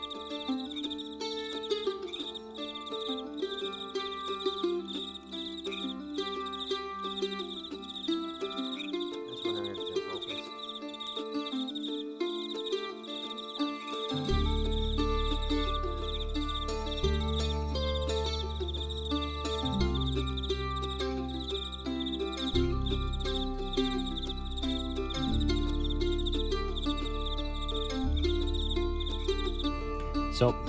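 Crickets chirping in a steady high trill under background music, with a deep bass line joining the music about halfway through.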